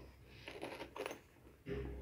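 Fabric pencil case being handled and turned over on a tabletop: a few short rustles and light clicks, then a dull handling bump near the end.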